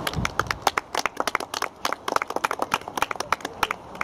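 Scattered hand clapping from a small group of spectators: irregular sharp claps, several a second, that start abruptly and thin out near the end.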